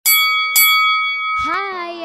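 Two bright bell dings about half a second apart, each ringing on with a clear tone, then a voice starting about one and a half seconds in.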